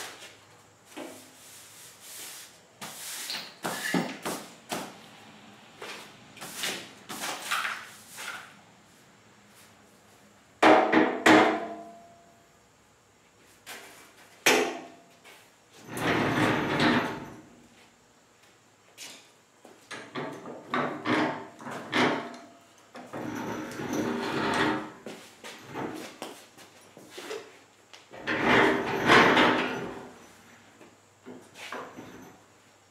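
Workshop clatter: irregular knocks, clanks and scraping as a steel work bench fitted with new casters is handled and rolled across a concrete floor. The loudest is a sharp metallic clank with a short ring about eleven seconds in, and there are longer stretches of rolling and scraping later on.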